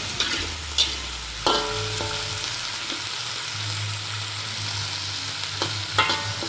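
Diced potato, onion and lemongrass sizzling steadily in hot oil in a wok, with a few sharp knocks scattered through it.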